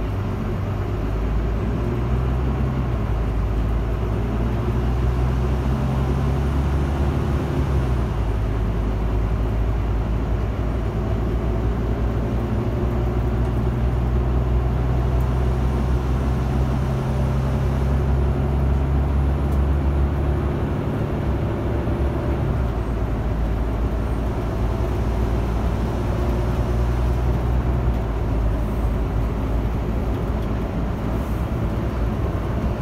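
Volvo bus engine running under way, heard from on board over steady road noise. The low engine note steps down twice, about a quarter of the way in and again about two-thirds through.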